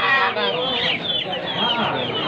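Chickens clucking, a quick run of short high calls, over background voices.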